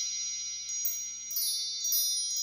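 Chime sound effect: many high, bell-like tones ringing on and slowly fading, with a few light fresh strikes shimmering over them.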